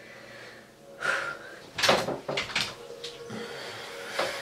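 A person getting up out of a bathtub in a small bathroom: a breathy sound about a second in, then several sharp knocks and bumps.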